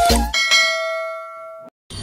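A single bell chime sound effect, struck once and ringing out with several clear overtones as it fades, then cut off abruptly after about a second and a half. It goes with a subscribe-and-notification-bell click animation.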